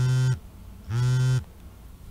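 Mobile phone vibrating with an incoming call: two steady low buzzes, each about half a second long, with a short gap between them.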